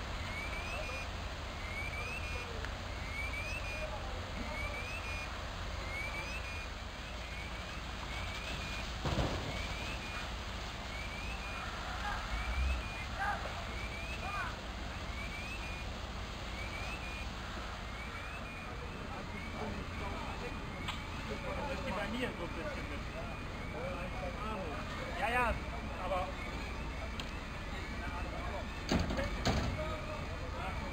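An electronic alarm sounds a short rising chirp about once a second, over a steady low rumble and faint distant voices. A couple of brief knocks stand out, about a third of the way in and again near the end.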